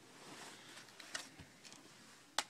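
Near silence: faint room hiss with a couple of soft, faint clicks from hands handling the underside of a laptop.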